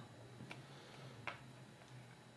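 Very quiet handling of a small plastic dash cam: two faint clicks, about half a second in and again just past a second, over a faint steady low hum.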